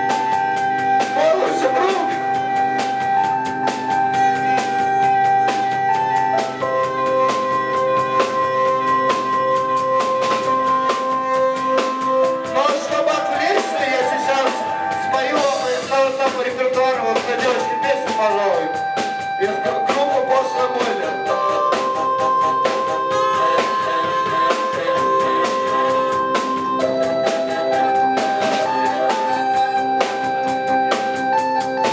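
Live band playing an instrumental passage: held keyboard chords that change every few seconds over a fast, steady drum and cymbal pattern. In the middle, a wavering line that bends up and down in pitch joins in over the chords.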